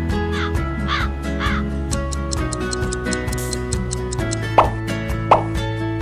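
A comedic crow-caw sound effect, three short cawing calls about half a second apart, laid over light background music to mark an awkward pause. Two short sharp pops follow in the second half.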